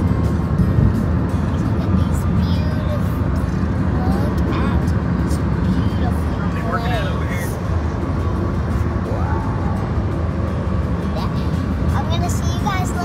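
Steady road and engine rumble inside a moving car's cabin, with faint indistinct voices and music under it.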